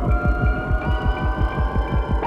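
Film-trailer sound score: a fast, low throbbing pulse at about eight beats a second, under sustained high tones, one of which slowly rises in pitch.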